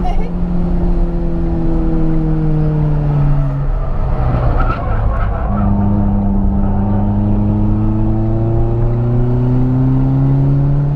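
Renault Sandero RS 2.0 four-cylinder engine heard from inside the cabin on a track lap. The engine note sinks slowly in pitch for the first three and a half seconds as the car comes off the throttle. After a brief break around four to five seconds in, the revs climb steadily under acceleration to the end.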